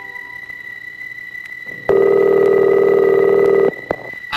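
A single telephone ringing tone in the handset, a steady low-pitched tone with a fast flutter lasting nearly two seconds, starting about two seconds in and cutting off abruptly. The fading end of music is heard at the start, over a faint steady high whine.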